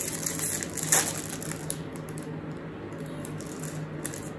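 Plastic snack wrapper being handled and opened, crinkling and crackling, with a sharp crackle about a second in and quieter rustling after.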